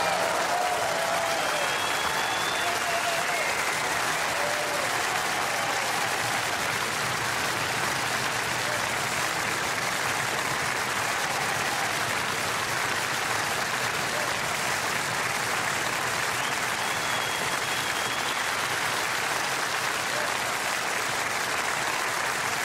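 Large audience applauding steadily at the end of a song, with a few voices calling out in the first few seconds.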